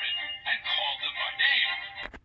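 Small built-in speaker of a light-and-sound Christmas pop-up book playing music with a voice, thin and tinny with no bass.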